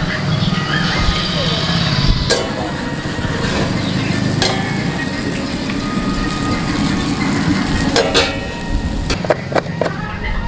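Masala pav toasting on a hot flat iron tawa, sizzling, with the steel spatula clicking and scraping on the metal. Sharp clicks come about two seconds in, around four and a half and eight seconds, and in a quick run near the end, over a steady low rumble.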